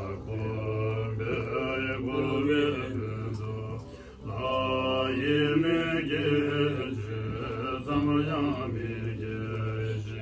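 Several Tibetan Buddhist monks chanting prayers together in a low, steady recitation, with a short break for breath about four seconds in.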